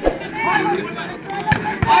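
A volleyball being struck hard by hand: one sharp smack right at the start as it is served, then two more quick hits about a second and a half in as the rally goes on at the net, over crowd chatter.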